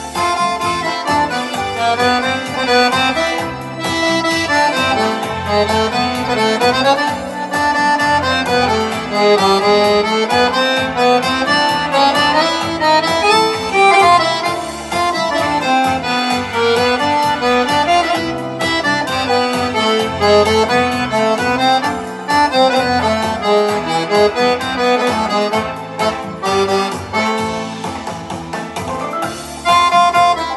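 Piano accordion playing a cha-cha-cha tune, with a steady beat underneath.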